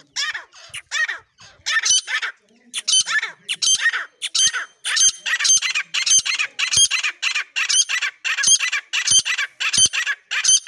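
Grey francolins (desi teetar) calling: a run of loud, high, ringing calls. They are scattered at first and settle after about a second and a half into a steady rhythm of about two calls a second.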